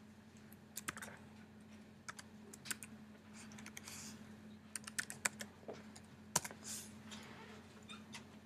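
Computer keyboard keys being typed in short, irregular bursts of clicks over a faint steady hum.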